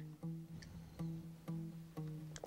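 Soft background music: plucked acoustic guitar notes, a new note starting about every half second.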